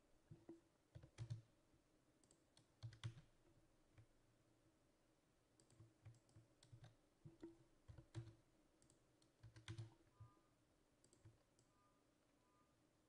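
Faint computer mouse clicks and keyboard key presses, a dozen or so short clicks at irregular intervals, over a faint steady hum.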